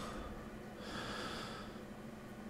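A person breathing out softly through the nose once, close to the microphone, over a faint steady hum.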